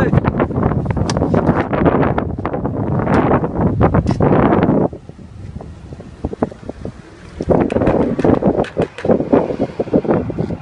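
Loud rumbling wind or handling noise on a phone microphone, dense with clicks, for about the first five seconds, then dropping away. Near the end comes a run of sharp clicks and scrapes.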